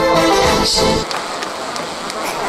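A live band's accompaniment holds a chord at the end of a song, then cuts off abruptly about a second in. It gives way to a steady, noisy crowd background.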